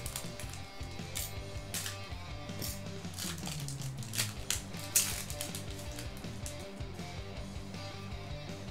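Foil trading-card pack wrapper crinkling and being torn open, several sharp crackles with the loudest about five seconds in, over soft background music.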